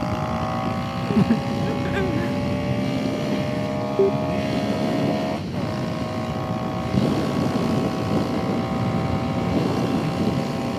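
Kawasaki Z125's small single-cylinder four-stroke engine pulling under throttle, its note climbing slowly, with a brief break in the tone about five and a half seconds in before it pulls on. Wind rush on the helmet microphone runs underneath.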